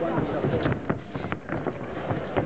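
Voices calling out in a boxing hall, with several sharp knocks and thuds from the bout in the ring scattered through it.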